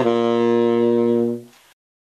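The Martin tenor saxophone with a Drake "Son of Slant" 7L mouthpiece and Rico Royal #3 reed, holding one long low note. The note dies away about a second and a half in, leaving silence.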